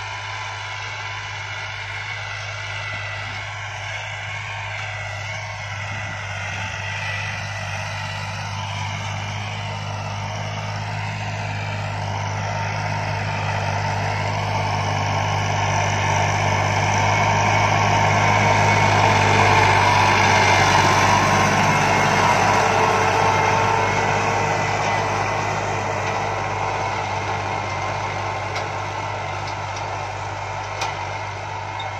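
Tractor engine running steadily as it pulls a disc harrow through the field. It grows louder as the tractor comes close, about two-thirds of the way in, then fades as it moves away.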